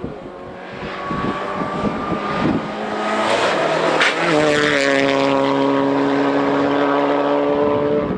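Suzuki Swift Sport Hybrid rally car's turbocharged four-cylinder engine revving hard as the car comes closer, its note climbing in pitch. About four seconds in there is a brief sharp crack as it passes close by, and the pitch drops. It then holds a steady, loud note as the car pulls away.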